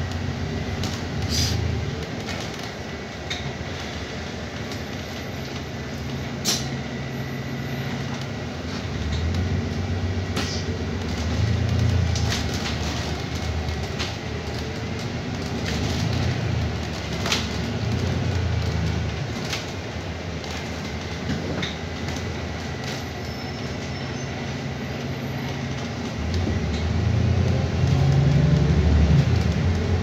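Double-decker bus in motion, heard from inside the lower deck: a low drivetrain and road hum that swells and eases several times and is loudest near the end. Over it come scattered rattles and clicks from the interior fittings, and a faint steady high whine.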